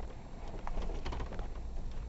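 Off-road vehicle running with a steady low rumble, with irregular knocks, clicks and creaks as it works over rough ground.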